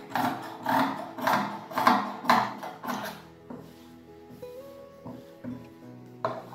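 Large tailor's shears cutting through fabric in quick strokes, about two snips a second, for the first half, then going quiet. Background music plays underneath.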